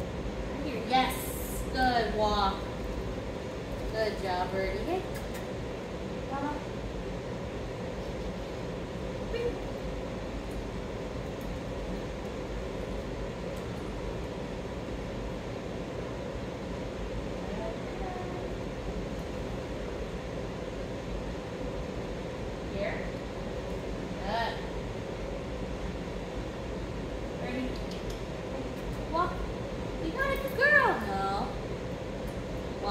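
A scattering of short, soft voice sounds, the first few in a quick cluster about a second in and more near the end, over a steady background hum.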